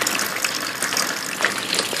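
Water from a leaking roof dripping and trickling into a plastic bin set out to catch it, a steady watery hiss with faint splashes.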